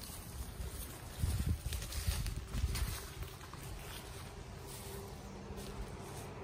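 Low rumbling buffets of wind on the microphone, strongest between about one and three seconds in, with faint rustling outdoors, then a quieter steady hiss.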